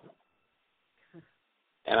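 A pause in the talk, nearly silent, with one brief, low grunt-like sound from a person's voice just after a second in.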